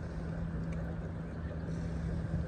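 Steady low engine rumble with a constant hum, as of a motor vehicle running close by.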